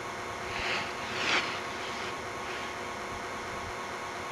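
Steady hiss and hum of a low-quality camcorder recording outdoors, with two faint short sounds about a second in.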